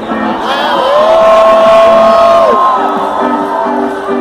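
Live ska band playing to a crowd: a long held note swells in about half a second in and falls away near three seconds, then a short repeating riff picks up again.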